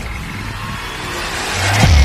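Intro sound effect of an animated vault door unlocking: a mechanical whirring rush that grows louder and ends in a deep boom near the end.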